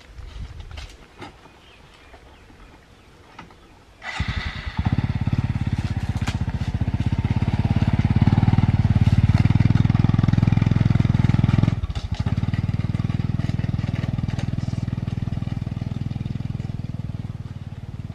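A small engine starting about four seconds in and running with a fast, even firing pulse. It runs louder for a few seconds, drops back briefly and keeps running.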